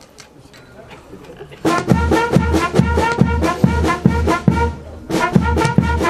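Brass music with a steady drum beat starts about a second and a half in, breaks off briefly near the end, then starts again.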